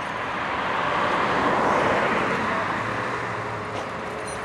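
A car passing by: road noise that swells to a peak about halfway through and then fades away.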